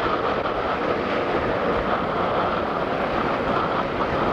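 Jet engines of an Airbus A380-861, four Engine Alliance GP7200 turbofans, running at takeoff thrust during the takeoff roll, a steady, even noise.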